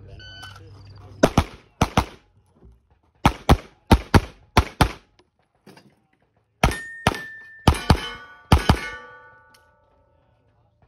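A shot timer's short electronic beep, then a Sig Sauer P320 XFIVE Legion 9 mm pistol firing about sixteen rapid shots, mostly in pairs, over a USPSA Carry Optics stage. The last strings set steel targets ringing after the shots.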